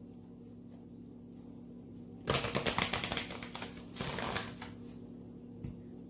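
A deck of tarot cards being shuffled: quiet at first, then about two seconds in a quick run of rattling card clicks for a couple of seconds, followed by a few separate soft snaps.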